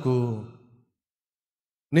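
A man's voice through a microphone, drawing out the end of a phrase and falling in pitch as it fades, then about a second of complete silence before his speech starts again at the very end.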